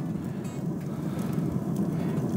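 A Broil King Regal Pellet 400 pellet grill runs at full searing heat, giving a steady low rumble from its pellet fire and fan beneath the grates.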